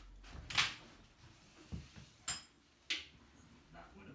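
Handling noises as the canvas tent is fastened to the motorcycle: three sharp clacks of its fittings, one about half a second in and two more just after two seconds, with a few soft knocks between.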